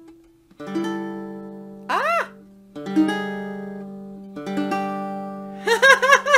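A baritone ukulele, just tuned by ear to itself, strums three chords that each ring and fade. There is a short vocal sound after the first chord, and giggling begins near the end.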